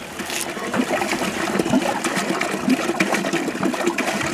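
Water from a village hand pump splashing into a plastic bucket, with scattered short knocks. It grows louder over the first second and then runs on unevenly.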